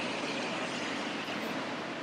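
Steady rushing of flowing water, an even noise that holds level throughout.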